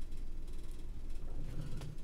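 Low, steady room hum, with faint handling noise and a small knock near the end as a camera and lens cap are picked up off a table.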